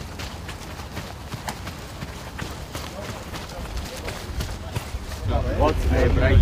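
Scattered sharp knocks of footballs being struck and players' running steps during a passing drill, over a low outdoor rumble. A voice comes in near the end.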